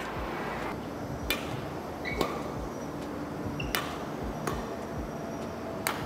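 Badminton racket striking a shuttlecock: four sharp hits spaced about one to two seconds apart, over faint steady hall noise.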